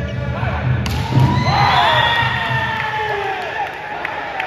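A volleyball is hit hard, with a sharp thud just under a second in, and then players' and spectators' voices rise in shouting and cheering as the rally ends in a point. A low, pulsing beat runs underneath.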